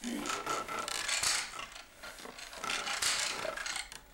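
A traditional wooden hand loom being worked, giving rasping, rubbing swishes of threads and wooden parts. The sound comes in two spells, with a lull about halfway.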